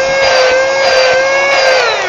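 Mini cordless handheld car vacuum cleaner running: its small motor gives a steady high whine, then spins down with falling pitch near the end as it is switched off.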